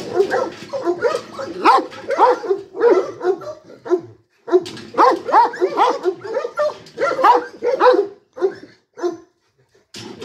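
A large long-haired dog barks in quick runs of several barks a second. There is a short break about four seconds in, and the barking trails off near the end.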